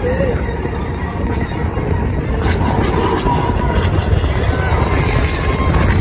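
Space Mountain coaster train running along its track, heard from a rider's seat as a loud, steady rumble, with a faint held tone over it in the second half.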